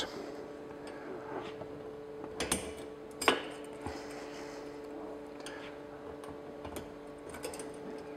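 Small metal clicks and scrapes as the wire clips of a rubber seat diaphragm are worked with a wire hook into drilled holes in a steel seat frame, the two sharpest clicks a few seconds in. A steady low hum runs underneath.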